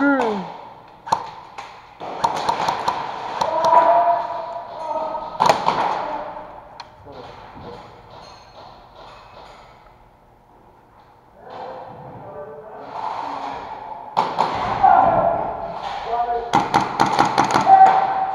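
Players' voices calling out in a large hall, with a few single sharp knocks and taps. Near the end comes a quick, evenly spaced run of sharp clicks.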